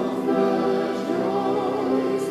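A church congregation singing a hymn together, led by singers at the front, holding long sustained notes.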